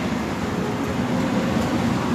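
Steady rush of cabin air-conditioning in a parked Boeing 777-300ER during boarding.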